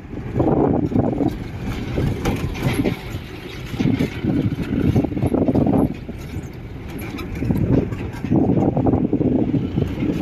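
A vehicle driving over a rough dirt track, heard from inside the cab: engine running with a rumble that swells and drops every second or two, with scattered rattles and knocks.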